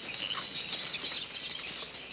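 Faint bird chirps over a steady hiss.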